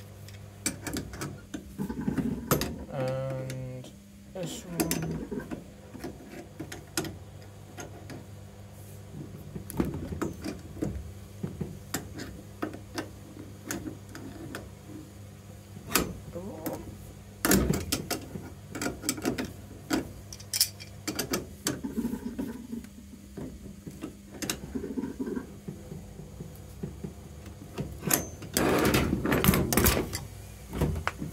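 Scattered metal clicks and knocks of an adjustable wrench gripping and turning a brass compression nut on a copper pipe, tightening a joint that is feared to leak, over a steady low hum. The knocks are louder and closer together near the end.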